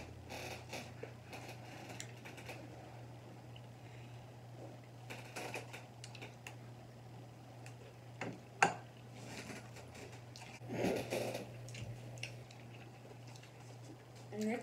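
Close-up eating sounds: chewing, lip smacking and small wet clicks from mouths and fingers over a steady low hum. One sharp click comes about eight and a half seconds in, as a piece of sauce-coated food is bitten, and there is a denser cluster of mouth noise around eleven seconds.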